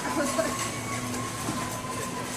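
Supermarket background: a faint steady whine held for about two seconds over a low steady hum, with a shopping cart rolling past and a brief murmur of voices.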